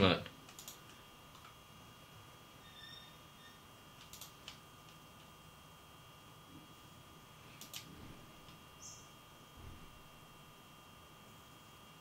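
Quiet steady whine of a small cooling fan on a single-board computer, with a few sharp clicks: a pair about four seconds in and another pair near eight seconds.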